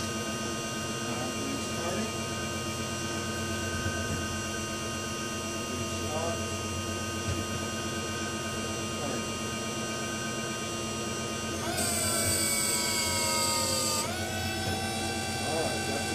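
Electric drive motor turning a raised rear wheel through a ZF 5HP24 automatic gearbox in first gear, a steady multi-tone whine. About twelve seconds in, the brake is applied and loads the gearbox: the sound grows louder with a falling pitch and a high hiss, then cuts off sharply about two seconds later, leaving a lower steady tone.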